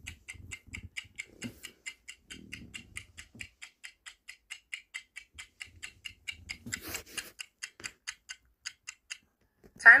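Countdown-timer clock ticking sound effect: fast, even ticks, about five a second, that stop about a second before the end, with a brief whoosh about seven seconds in.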